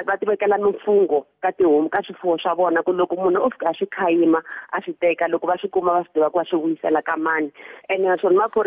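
Only speech: a man talking steadily, with a brief pause a little over a second in.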